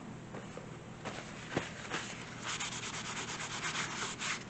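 A hand rubbing a wad of paper briskly across a paper card: a few scattered scratchy strokes at first, then a fast run of back-and-forth rubbing from about halfway.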